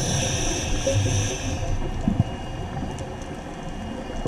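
Scuba diver breathing through a regulator underwater: a hissing inhale for about the first second and a half, then a quieter, muffled low rumble.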